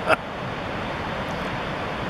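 Steady rushing roar of the Snoqualmie Falls waterfall and river, an even noise without rhythm.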